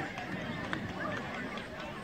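Indistinct voices of several people talking and calling out at once, with one sharp knock a little under a second in.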